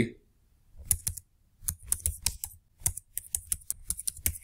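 Typing on a computer keyboard: runs of quick keystrokes, starting about a second in, with short pauses between the runs.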